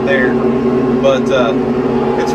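Tractor engine running at a steady drone, with a man's voice talking over it.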